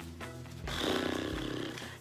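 Background music with a steady beat, and from a little under a second in, about a second of rasping paper rustle as mail envelopes are rummaged in a cardboard box.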